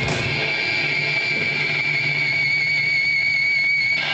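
Electric guitar run through effects pedals, holding a steady high-pitched tone with a fainter higher tone above it over a low hum, after a short noisy swell dies away at the start: a sustained feedback-like drone rather than played notes.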